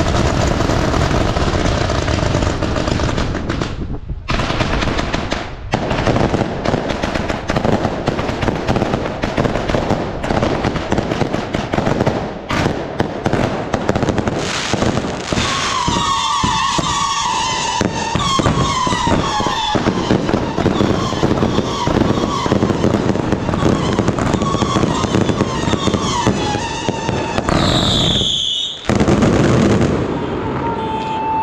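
Ground-launched fireworks barrage: a dense, continuous run of bangs, pops and crackling from many shots fired in quick succession. From about halfway, whistling tones join the crackle, and a high whistle sounds near the end.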